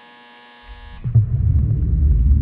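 Film score: a steady buzzing tone that stops suddenly about a second in, as a deep, low rumbling drone swells up underneath it and grows loud.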